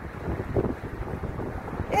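Wind buffeting the microphone: a low, uneven rush of gusting noise, strongest about half a second in.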